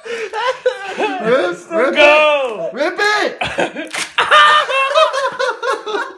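Men laughing hard without words, with drawn-out strained cries from the man having his chest waxed. A brief sharp noise about four seconds in.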